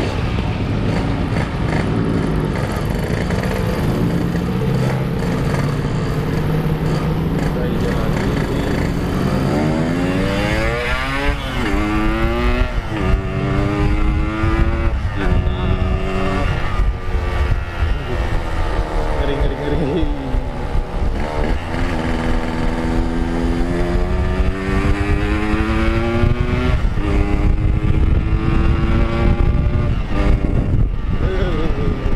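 Yamaha RX-King's 135cc two-stroke single-cylinder engine under way. It runs at low, fairly even revs for about the first ten seconds, then accelerates, with the revs climbing and dropping back again several times.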